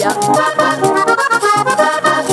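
Diatonic button accordion playing a quick run of notes in a vallenato puya, with percussion keeping a fast, even beat underneath.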